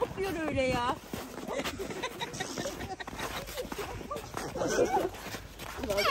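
Voices of people playing in the snow: a long wavering cry near the start and more calling later, not clear words, over scattered short crunches of footsteps in snow.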